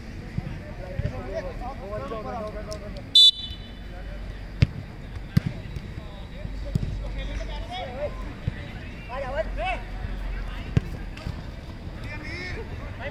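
Players calling and shouting to each other across a football pitch, with several sharp thuds of the ball being kicked. About three seconds in there is a brief, loud, high-pitched tone.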